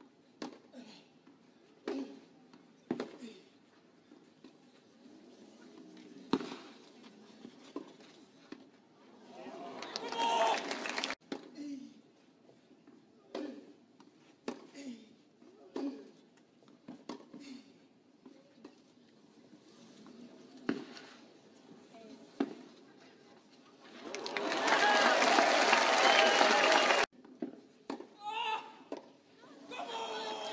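A tennis ball struck back and forth in a rally on a clay court, with sharp hits about once a second or so. A short burst of crowd noise comes about ten seconds in. Near the end the crowd applauds and cheers as the point is won, and this is the loudest sound.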